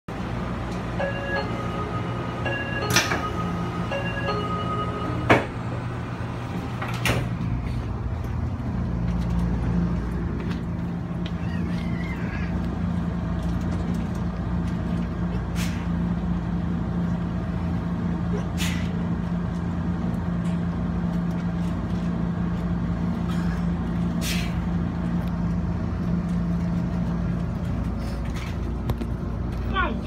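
Puyuma Express TEMU2000 tilting train: a door warning chime sounds in a few short tone groups and the doors shut with sharp clunks about three and five seconds in. Then the train moves off with a steady drive hum over the low rumble of the carriage.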